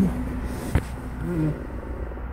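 A steady low background hum, with a single sharp click about three-quarters of a second in and a brief faint vocal sound a little later.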